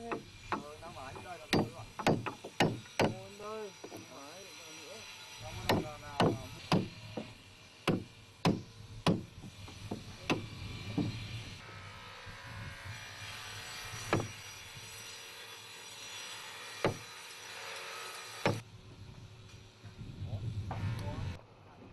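Hammer blows on a steel chisel cutting into the wooden planks of a boat hull: sharp knocks in quick spells of about two a second, then more spaced-out strikes. Voices are heard in the first few seconds.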